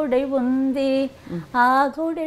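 An elderly woman singing unaccompanied: a few melodic phrases with notes held for about half a second each, broken by short pauses.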